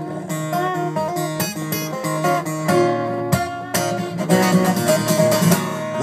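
Steel-string acoustic guitar played live in a steady strumming and picking rhythm, with no singing over it.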